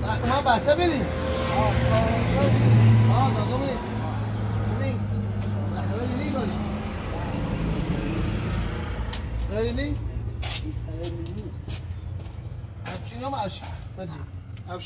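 Men talking in a language the recogniser did not write down, over the steady hum of a motor vehicle engine that grows loudest about three seconds in and fades away by about seven seconds.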